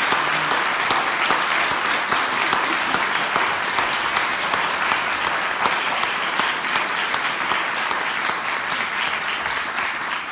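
Loud, steady applause from an audience, many people clapping at once.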